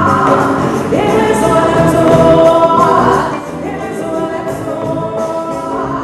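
Live West African band music with several voices singing long held notes, one sliding up in pitch about a second in, heard from among the audience in a concert hall. A little after halfway the singing stops and the band plays on more quietly.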